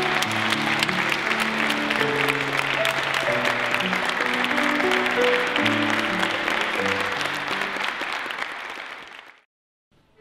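A group of people applauding over slow piano music playing held low notes. The clapping and the music fade out near the end.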